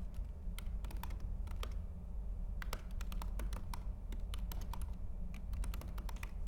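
Typing on a MacBook Pro laptop keyboard: quick, irregular key clicks, some in short runs, over a low steady hum.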